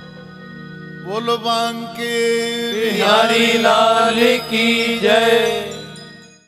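A man's solo voice sings a long, wavering, drawn-out melodic line of a Hindi devotional bhajan from about a second in, over a steady held drone. The sound fades near the end.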